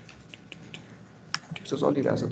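A few light clicks from a computer keyboard and mouse, with one sharper click about a second and a half in. A voice starts just before the end and is the loudest sound.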